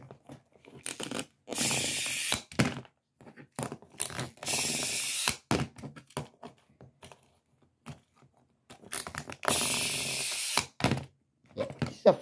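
A small plastic skiing Rabbid toy running in three bursts of about a second each, whirring, with short clicks and knocks of the plastic toy between them.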